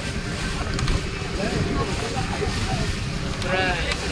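Steady low rumble of a harbour launch under way: its engine running, with wind and water noise over the hull. Passengers' voices are heard faintly, with a brief call near the end.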